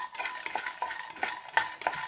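Peanuts being stirred in a non-stick pan with a spatula: the spatula knocks and scrapes against the pan about three times a second, each knock ringing briefly.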